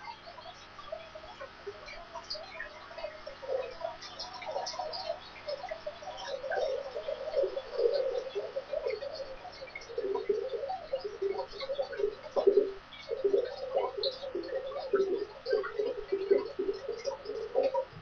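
Tap water running into a plugged bathroom sink as it fills, with irregular bubbling splashes that grow louder and denser after the first few seconds.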